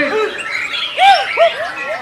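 White-rumped shamas (murai batu) singing in a dense mix of overlapping, arching whistled notes, with a run of three loud, low arching whistles about a second in.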